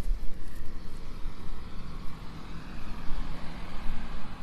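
Motor vehicle passing on the road, its tyre and engine noise swelling over the last couple of seconds, over a low buffeting rumble on the microphone.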